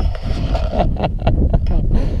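A person laughing in short breathy pulses, about four a second, over a steady low rumble of wind on the microphone.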